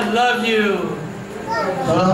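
Speech: a man's voice talking over a microphone.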